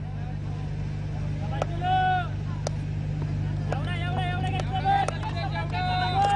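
Voices on a cricket ground shouting out across the field, briefly about two seconds in and again from about four seconds, over a steady low hum, with a few sharp clicks.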